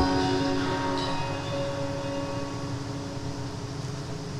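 Guitar chord left ringing after a strum, its notes slowly dying away over a steady low rumble.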